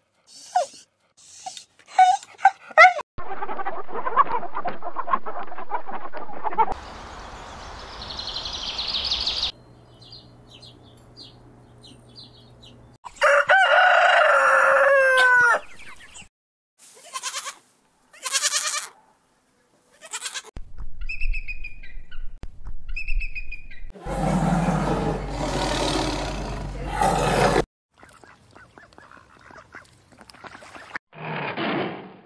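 A run of different animal calls, one short clip after another. About halfway through comes a rooster crowing, one long call.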